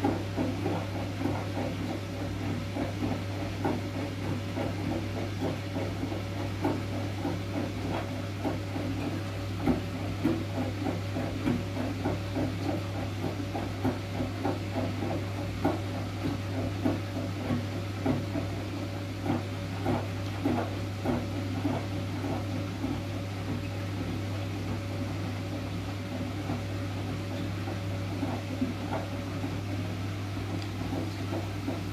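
Siemens front-loading washing machine running a wool cycle: a steady motor hum under irregular light knocking and clattering as the load turns in the drum, several knocks a second, busiest in the middle.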